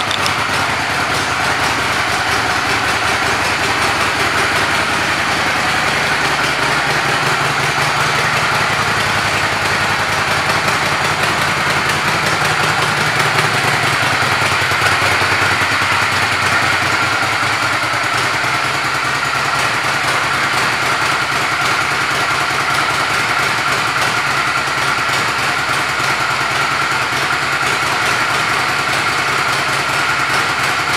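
Honda Shadow VLX600's V-twin engine idling steadily.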